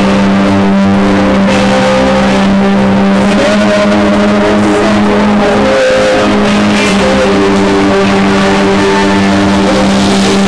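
Live electronic rock band playing loudly, led by a long held low synthesizer note with a higher, wavering synth line moving above it.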